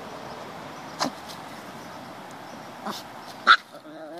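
A small dog gives three short, sharp barks over a steady background hiss; the last bark, near the end, is the loudest.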